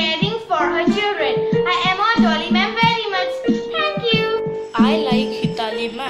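A young girl singing a song over instrumental backing music with steady held notes.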